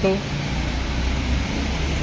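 A steady low rumble of background noise that grows somewhat stronger about half a second in, with the end of a spoken word at the very start.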